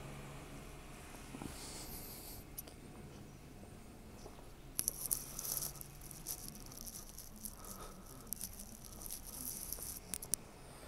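Quiet room tone with a faint steady low hum. From about halfway through, light rustling and small ticks, as of footsteps and a hand-held camera being moved.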